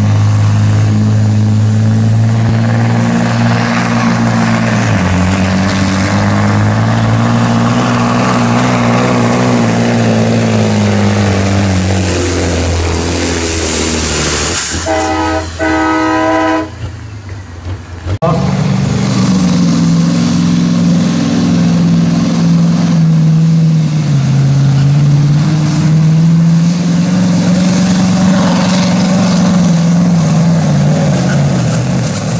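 Heavy diesel truck engines under full load pulling a weight-transfer sled, the revs sagging slowly as the sled's weight builds. About halfway comes a brief horn blast, then another truck's engine pulls steadily.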